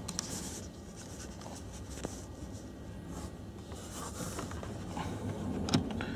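Faint scratching and rubbing of a plastic car-vent mount clip being handled and pushed onto an air vent's slats, with a couple of small clicks, over a steady low hum.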